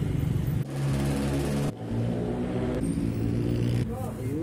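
Street traffic: a vehicle engine running with a steady low hum as motor traffic passes close by.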